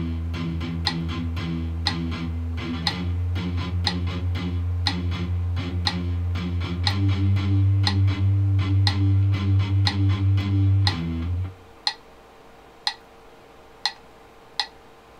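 Electric guitar playing a palm-muted sixteenth-note riff on the low string at 60 beats per minute, a bar on the open low E, a bar on the first fret and a bar on the third fret, stepping up in pitch twice and ending on a short open E about eleven seconds in. A metronome clicks once a second throughout and goes on alone after the guitar stops.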